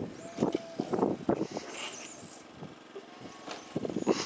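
Radio-controlled short course trucks running on the track, with several short knocks in the first second and a half.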